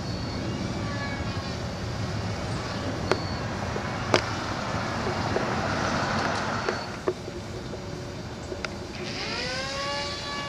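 Small electric RC plane's propeller motor buzzing in the air, its pitch rising steeply near the end as it speeds up. Under it runs a steady low rumble, with a few sharp clicks and a swell of hiss around the middle.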